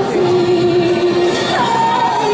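A woman singing a pop song live into a handheld microphone over music accompaniment, holding long notes, with a step up to a higher held note about one and a half seconds in.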